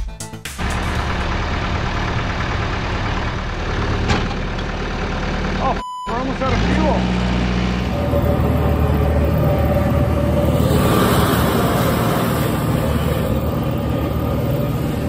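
Tractor engine running steadily under load. The sound breaks off briefly about six seconds in and picks up again.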